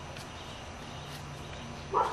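A West Highland white terrier puppy gives a single short bark near the end, over a faint steady background hum.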